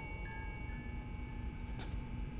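A struck metal chime ringing on with several clear tones that slowly fade, a faint tick near the end and a low steady hum beneath.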